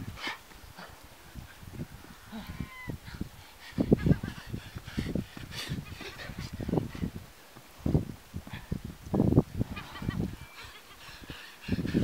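Heavy breathing and irregular footfalls of a man sprinting short shuttles on soft sand.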